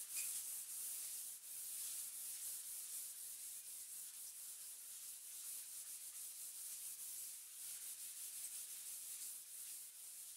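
Fine 1200-grit sandpaper rubbed by hand across the dried painted top of a wooden table, a faint high hiss in quick back-and-forth strokes: light sanding of the dry coat to smooth it before the next one.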